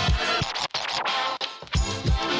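Background electronic music with a drum beat and record-scratch effects; the drums drop out for about a second in the middle.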